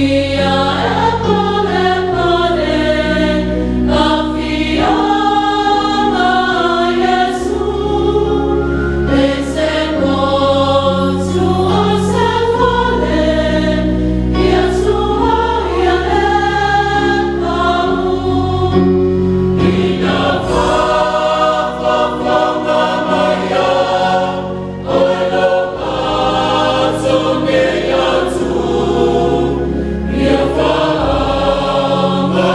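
A large mixed choir of men's and women's voices singing a Samoan church hymn in parts, over sustained low bass notes that shift with each chord.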